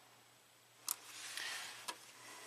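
Two small clicks, one about a second in and one near the end, with a soft rustle between them: test-lead probe tips being handled and pulled off the fuses of an under-hood fuse box.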